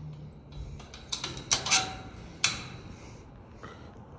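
Metal clinks and clicks of a snap hook and latch on a chain-link kennel gate being fastened shut: a quick cluster of sharp clinks from about a second in, then one more single clink a second later.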